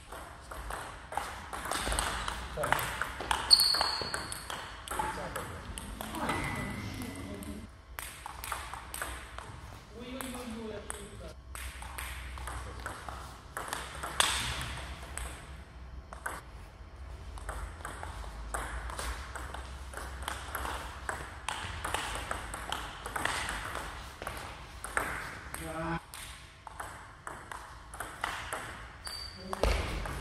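Table tennis ball clicking back and forth between bats and table in rally after rally.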